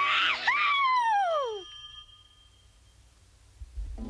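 A high cartoon cry that slides down in pitch over about a second and a half, over the fading end of the music. Then close to silence, until low music starts near the end.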